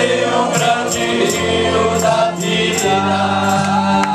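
Men's vocal group singing a hymn in harmony, holding long notes, over accompaniment with a regular high percussion tick.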